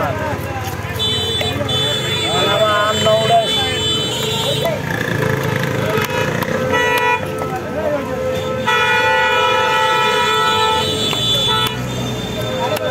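Vehicle horns honking in passing street traffic: a long steady blast about a second in, a short one near the middle and another long one in the second half. Voices and the odd knock of a cleaver on a wooden chopping block run underneath.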